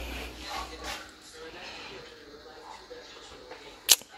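Quiet room background with faint, indistinct voices and a low rumble in the first second, then a single sharp click just before the end.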